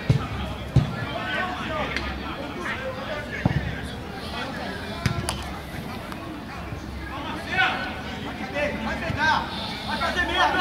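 Voices of players and onlookers calling out across an open-air football pitch, with a few short, sharp knocks.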